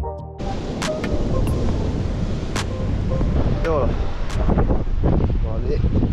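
Wind buffeting the camera microphone in a steady low rumble. Electronic music cuts off abruptly just under half a second in.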